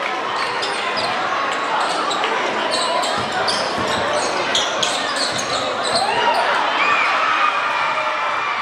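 Basketball being dribbled on a hardwood gym floor during a game, over steady crowd chatter. Short, sharp high sounds come through in the first half.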